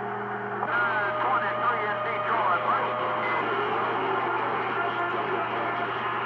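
CB radio receiver on channel 28 with its squelch open: static hiss and a steady hum, with faint, garbled voices of distant stations and a few held whistling tones coming through.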